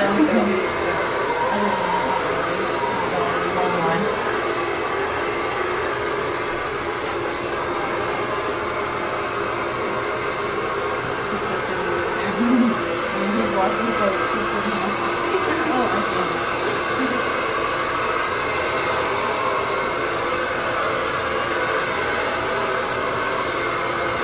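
Steady whir of a small electric motor with a hum, running unbroken.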